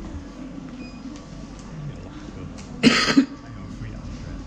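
A person coughing twice in quick succession, a short loud burst about three seconds in, over a low murmur of voices.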